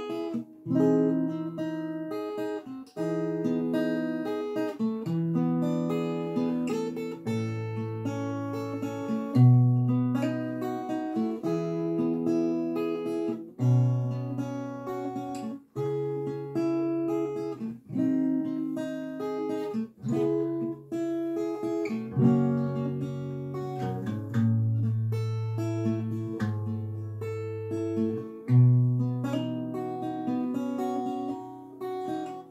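Steel-string acoustic guitar with a capo on the second fret playing the instrumental introduction to a communion hymn, a chord progression sounding in E with chords changing about every second.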